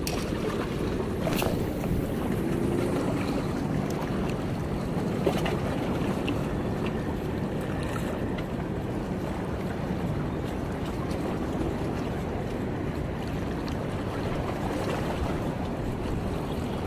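Steady sound of wind on the microphone and small sea waves washing against the breakwater rocks, with a couple of faint clicks.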